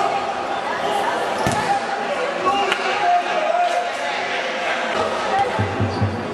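Futsal ball being kicked and bouncing on the hard indoor court, with one sharp kick about a second and a half in. Players' voices carry through the hall.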